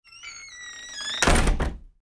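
Logo sound effect: a falling, chime-like tone for about a second, then a loud noisy hit about a second in, with a smaller second hit just after, fading out quickly.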